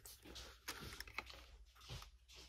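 Faint rustling of paper banknotes being handled and slid into a cash envelope in a ring binder, with a few small clicks and taps in the middle.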